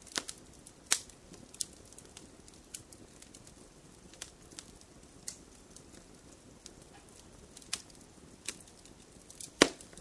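Burning logs crackling: irregular sharp pops and snaps over a faint low hiss, with the loudest pop near the end.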